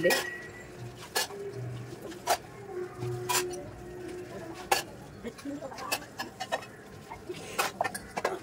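Stainless-steel utensils clinking and knocking against each other and the sink as dishes are washed by hand, in about a dozen separate, irregular strikes.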